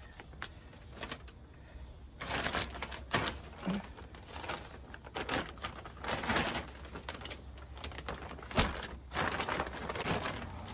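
Plastic bags of perlite and Miracle-Gro potting mix being handled, crinkling and rustling in irregular bursts from about two seconds in.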